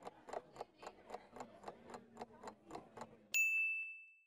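Countdown timer sound effect: a clock ticking at about four ticks a second, then a single bell ding near the end, the loudest sound, ringing out briefly to signal that time is up.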